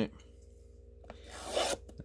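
A short rubbing scrape, building and fading over about half a second past the middle, from a hand handling the shrink-wrapped cardboard blaster box on a cloth surface. A small click comes just before it.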